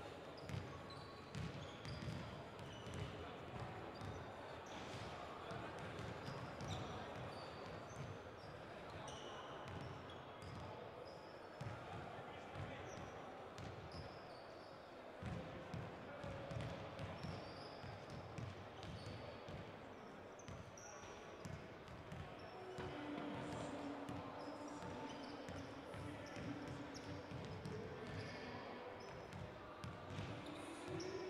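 Basketballs bouncing on a hard court, several at once in an irregular patter, with short high squeaks and a murmur of voices in the hall.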